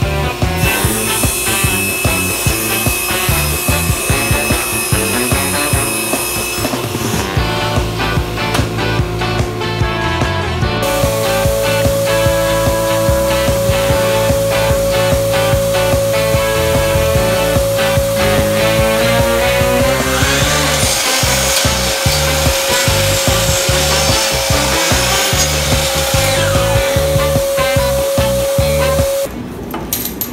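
Background music with a steady beat, over the noise of power saws cutting: a table saw through plywood and a miter saw through plastic runner strips.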